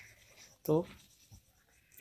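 One short spoken word in a man's voice, then near silence.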